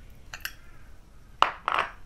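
A metal spoon clinking and scraping against small glass bowls while scooping powdered jaggery. A few light clicks come first, then a sharp clink about a second and a half in, followed by a short scraping noise.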